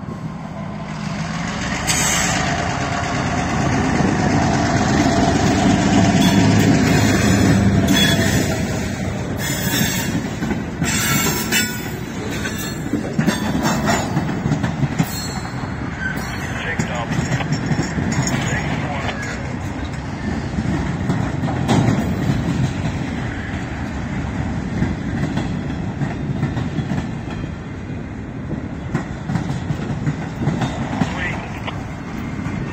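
EMD MP15 diesel switcher locomotive running close by, its engine loudest in the first several seconds, followed by a string of boxcars rolling past with clicking over the rail joints and brief wheel squeal.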